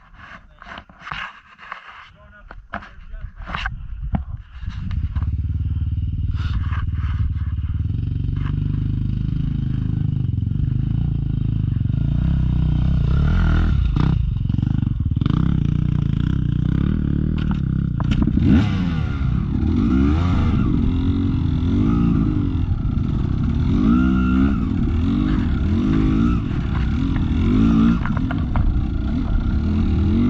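Dirt bike engine comes in about four and a half seconds in, after a few scattered clicks and knocks, then runs steadily. In the second half it revs up and down repeatedly as the bike is ridden over a rocky trail.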